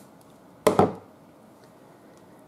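A pair of craft scissors set down on the tabletop: one brief knock, about two-thirds of a second in.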